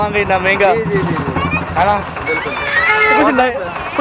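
Men talking in conversation, over a steady low hum of street traffic engines.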